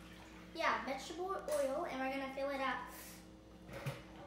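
A young girl's wordless voice, drawn out for about two seconds, as she strains to twist open a plastic bottle cap.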